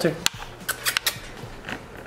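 Light clicks and clinks as a dog moves around close up, a scattered run of sharp little ticks.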